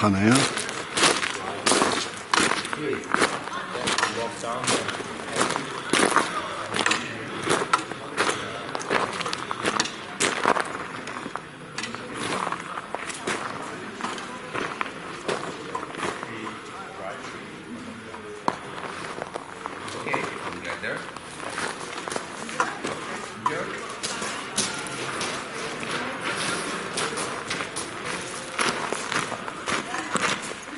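Footsteps crunching on loose gravel and stones, an irregular run of short crunches that is louder and denser in the first ten seconds or so.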